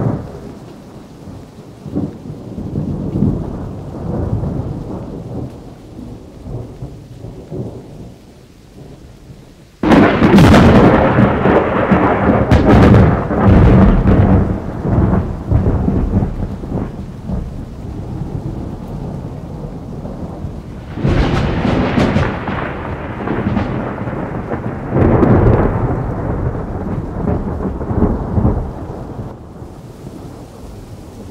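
Thunderstorm: steady rain with thunder rumbling. A loud thunderclap breaks in suddenly about a third of the way through, and more heavy rumbles swell up in the later part.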